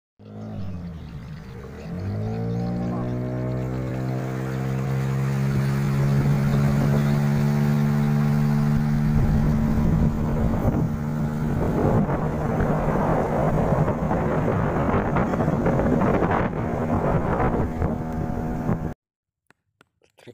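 A small motorboat's engine speeds up sharply about two seconds in, then runs steadily at speed, with water rushing along the hull. The sound cuts off abruptly about a second before the end.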